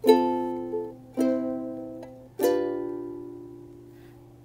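Ukulele strummed: three chords about a second apart, each fading, the last left ringing.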